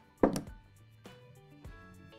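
A flush cutter snipping copper jewellery wire, one sharp click about a quarter second in, with a couple of fainter tool clicks later, over quiet background music.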